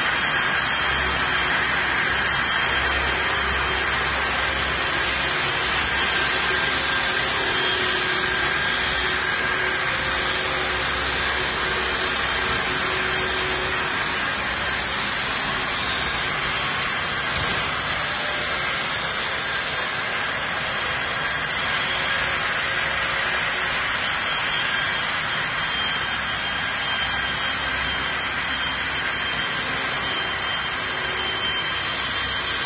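Multi-blade saw running steadily: a continuous, even machine noise with no breaks or changes in load.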